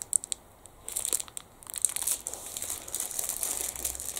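Packaging crinkling and rustling as individually wrapped snack rolls are handled. A few light clicks come first, then irregular crackling from about a second in.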